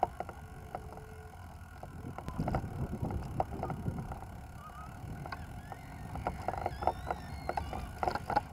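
Riding noise from a small vehicle rolling over paving: a low rumble with wind on the microphone and scattered clicks and rattles. The rumble swells for a couple of seconds about two seconds in.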